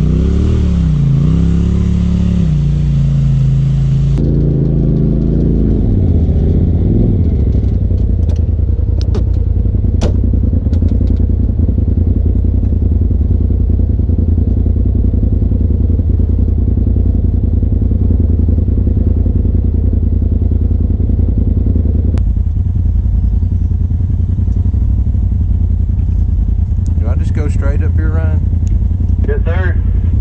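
Side-by-side UTV engines crawling a rocky trail at low speed: revving up and down for the first few seconds, then a steady low drone heard from inside the cab. A few sharp clicks come around ten seconds in.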